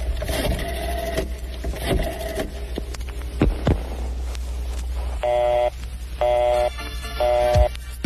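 Mock 'historic recording' of the first transatlantic telephone call: a line hum with crackle and a few quick falling swoops. From about five seconds in, a buzzy tone pulses on and off about once a second.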